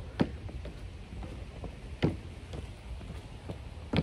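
Feet landing on plastic aerobic steps during weighted step-ups: a few dull thuds about two seconds apart, with fainter taps between, over a steady low rumble.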